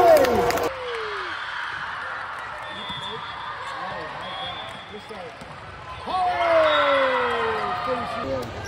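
Indoor volleyball gym ambience: shouting voices of players and spectators echoing in a large hall, cutting off abruptly to quieter scattered chatter about a second in, then a long falling call near the end.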